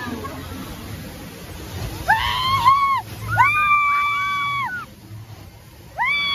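A young girl screaming on a water-ride raft: a short high-pitched scream about two seconds in, then a longer held scream about a second later.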